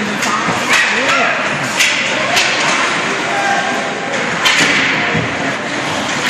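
Ice hockey play up close: sticks and puck clacking sharply several times over a steady scrape of skates on the ice, with voices shouting.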